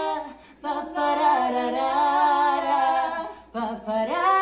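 Two women singing a Spanish-language ballad a cappella in long held notes, with short breaks for breath about half a second in and near the end.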